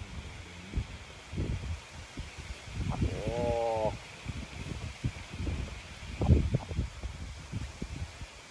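Irregular low thumps and rustles of handling and clothing close to a phone's microphone, with one short, slightly falling vocal sound lasting about a second, about three seconds in.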